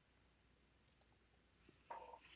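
Near silence with two faint computer-mouse clicks about a second in, and a faint sound starting just before the end.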